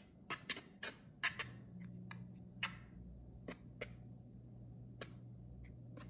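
Wire whisk stirring dry flour mixture in a plastic mixing bowl: faint, irregular light clicks and taps of the whisk wires against the bowl, coming closer together in the first second and a half and sparser after.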